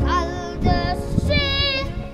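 A child singing in a high voice, holding wavering notes.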